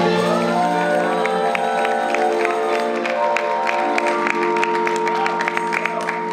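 A live band's final chord ringing out and held, with the audience clapping and cheering over it.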